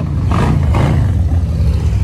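Motorcycle engine running loudly, swelling briefly in a short rev.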